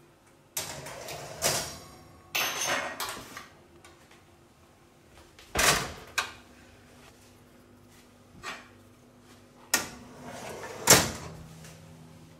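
Stainless steel roasting pan being set onto an oven's wire rack and pushed in: a few seconds of metal scraping and sliding, then a series of sharp metallic clunks, the loudest near the end.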